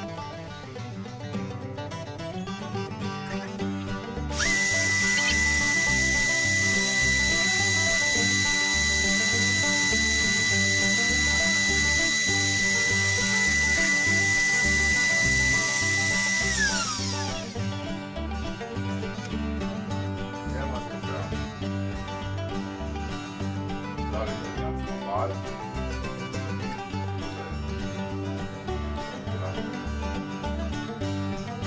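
A compact trim router used as a CNC spindle spins up about four seconds in, runs at a steady high-pitched whine for about twelve seconds, then falls in pitch as it spins down. Background music plays throughout.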